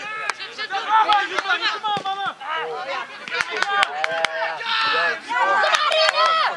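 Several voices shouting and calling out across a football pitch, loud and high-pitched, overlapping throughout, with a number of short sharp knocks among them.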